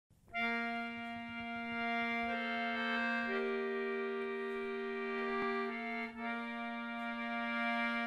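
English concertina playing a slow introduction: sustained chords over one low note held throughout, with the upper notes moving to a new chord every second or so.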